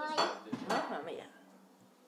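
Two sharp clinks of tableware, about half a second apart, with a brief voice sound just before them, then quiet room tone.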